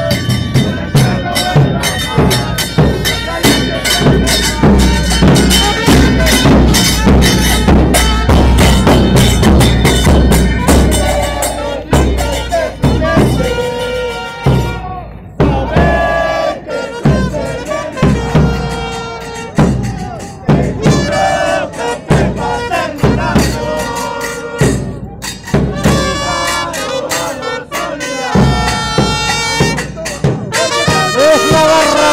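A fans' street band playing: bass drums (bombos) beating a steady rhythm under trumpets and other brass, with the crowd shouting along. The drumming drops out briefly about halfway through.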